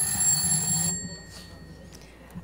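Electric bell ringing for just under a second, then its metallic ring fading out: the chair's bell signalling the opening of the committee meeting.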